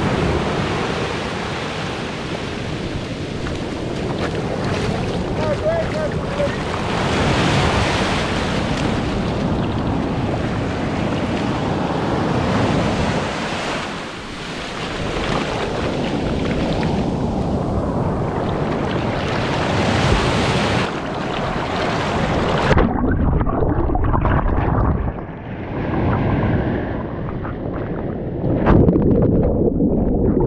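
Waves breaking and washing up a sandy beach, with wind buffeting the microphone. About 23 seconds in, the sound turns suddenly muffled and low as the microphone goes under the water, leaving dull underwater rumbling and gurgling.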